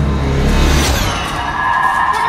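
Background music with a deep, steady bass cuts off under a downward-sweeping whoosh sound effect about a second in, followed by steady high ringing tones.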